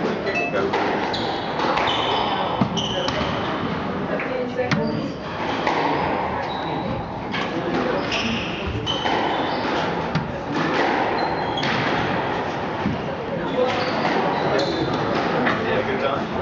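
Squash rally: the ball cracking off racquet strings and the court walls in an irregular series of sharp hits, with short high shoe squeaks on the wooden floor. Spectators talk quietly underneath.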